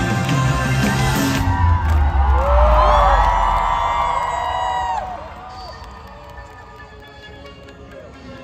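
A live pop-rock band's final chord rings out while the audience cheers and whoops. The cheering dies down about five seconds in.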